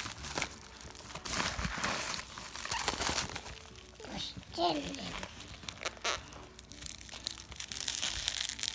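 A padded mailer torn open by hand, then its clear plastic wrapping crinkled and handled: an irregular run of rustles and crackles.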